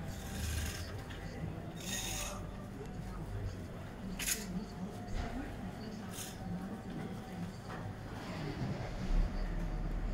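Four short, spread-out scraping sounds over faint distant voices in an open square.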